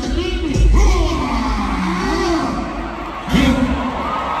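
Live hip hop performance heard in an arena: a performer's amplified voice over the PA with bass-heavy music and a cheering crowd. The voice gets louder about three seconds in.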